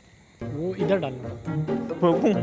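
Crickets chirring steadily in the background, with a melodic vocal sound, like music with singing, coming in about half a second in and carrying on.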